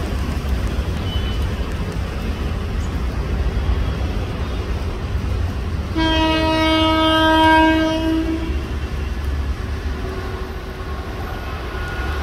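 Horn of an approaching WAP-4 electric locomotive: one long blast lasting about two and a half seconds, starting about halfway through, over a steady low rumble.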